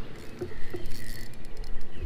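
Spinning reel being cranked against a hooked, fighting smallmouth bass, a rapid fine ticking over the low noise of water and wind on the microphone.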